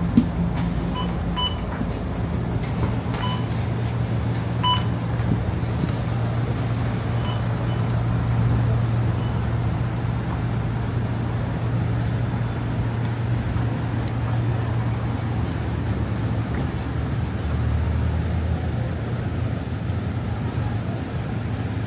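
Low, steady hum of idling bus engines, with several short electronic beeps in the first five seconds from the bus's fare card reader as passengers tap their cards on getting off.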